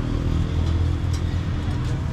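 Street traffic: a steady low rumble with a vehicle engine running close by.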